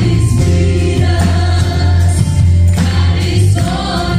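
A live worship band plays a gospel song, with a woman singing lead and backing singers over drums, bass guitar, acoustic and electric guitars and keyboard.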